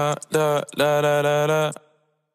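Background music: a voice singing a wordless melody in held, stepped notes with no beat, cutting off shortly before the end into a brief silence.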